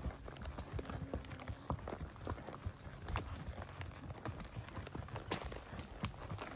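Horses walking on a soft, muddy dirt trail: irregular, soft hoof thuds with small clicks from twigs and leaves underfoot.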